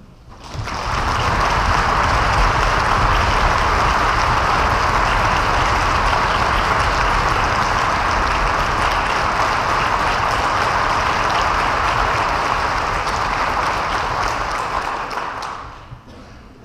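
Concert audience applauding to welcome the soloist onto the stage. The applause swells within the first second, holds steady, and dies away near the end.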